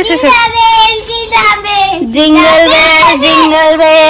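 A young girl's high voice singing in a sing-song chant of long held notes, dipping briefly in pitch about halfway through.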